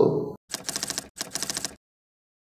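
Typewriter typing sound effect: two quick runs of key clicks, each about half a second long, then it stops. A man's speech trails off just before it.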